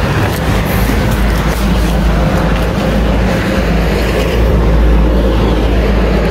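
A motor vehicle's engine running close by with road and traffic noise: a steady low rumble and hum, holding level throughout.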